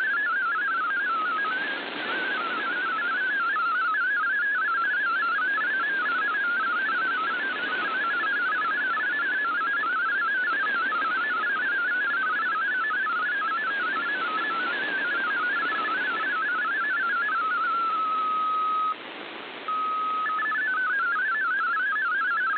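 MFSK32 digital text signal received on a shortwave AM radio: a rapid warble of hopping tones over steady static hiss. About 18 seconds in, the warble settles to one steady tone, cuts out for under a second, then comes back as a steady tone that steps up in pitch before the warbling resumes.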